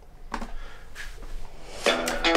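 Faint handling noises, a few soft knocks and rubbing, as a person reaches down to something beside him, with a short faint tone about a second in.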